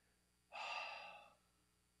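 A man's single deep breath, close to the microphone, lasting under a second and starting about half a second in.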